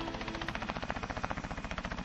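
Helicopter rotor beating in a rapid, even pulse.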